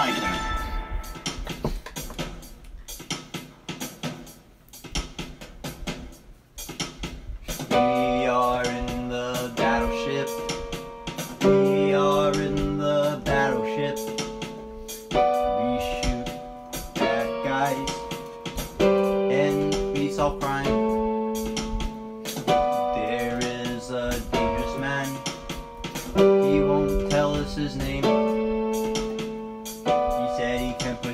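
Song played on an electronic keyboard: a steady percussive beat alone at first, then sustained keyboard chords come in about eight seconds in and change every second or two over the beat.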